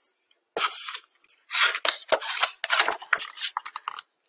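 Paper pages of a picture book being turned and handled: a short rustle about half a second in, then a longer run of paper rustling and crackling.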